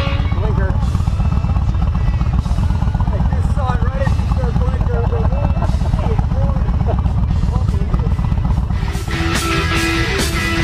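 Several motorcycle engines idling at a standstill, a steady low rapid pulsing, with a man talking over them. Rock music comes back in near the end.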